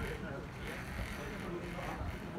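Faint, indistinct voices of people talking in the open air, over a steady low rumble of wind on the microphone.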